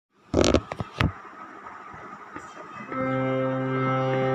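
A few knocks and clatter of a phone being handled, then about three seconds in a steady held note of the instrumental accompaniment starts and sustains.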